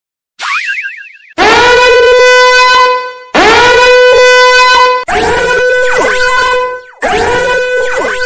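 Intro sound effect: a short warbling rising whistle, then four long horn blasts, each scooping up into one steady held tone, with sweeping up-and-down glides over the last two.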